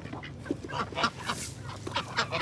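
Domestic geese and ducks giving short, scattered honks and quacks.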